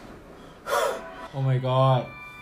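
A man's voice: a sharp gasping breath about two-thirds of a second in, then a long, steady drawn-out cry held at one low pitch until the end.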